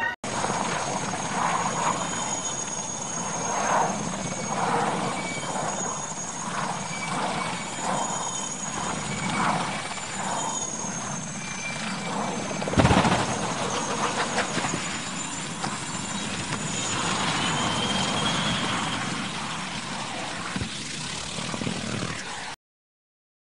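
Large helicopter running with a high turbine whine over rotor and engine noise. About 13 seconds in comes a single loud crash as it rolls over and its rotor strikes the ground, and the engine noise goes on afterwards.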